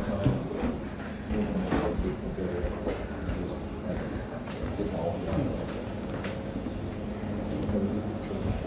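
Voices of people talking in the background, not close to the microphone, with a few short knocks, likely footsteps and handling on a wooden floor.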